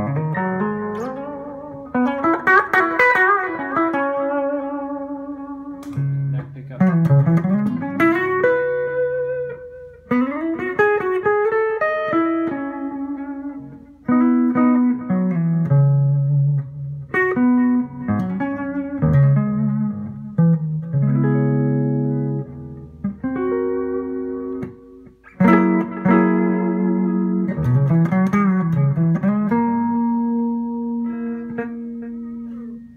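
Electric guitar played through a Line 6 M5 stompbox modeler on its Digital Delay with Mod preset, delay time about 437 ms, into a Carvin Legacy 3 tube amp. Lead lines with string bends and vibrato mixed with held chords, in phrases separated by short pauses.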